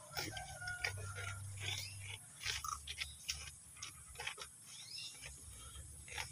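Goats tearing at and chewing fresh leafy browse in a feed trough: irregular rustling of leaves and small crunching bites.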